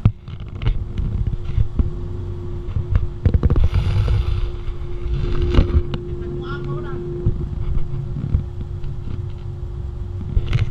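Wind buffeting the camera microphone on a moving cruise ship's open deck, a steady low rumble with irregular gusts over a steady hum that fades out about seven and a half seconds in. A brief run of high chirps comes about six and a half seconds in.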